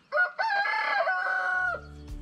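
A rooster crowing once: a short note, then one long call that drops in pitch partway through. Background music begins near the end.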